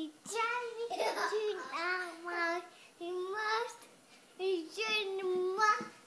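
A young girl singing in high, held notes that waver in pitch, in a few phrases with short breaks between them.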